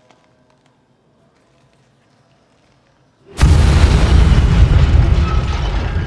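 A sudden loud explosion about three and a half seconds in: a deep blast that keeps rumbling and slowly dies away.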